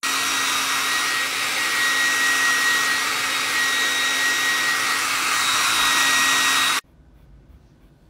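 Handheld hair dryer blowing steadily: a loud rush of air with a steady whine running through it. It cuts off suddenly about seven seconds in.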